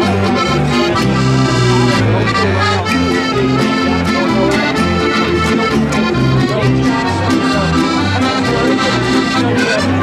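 Accordion music: a lively traditional tune over a regular, alternating bass line, playing without a break.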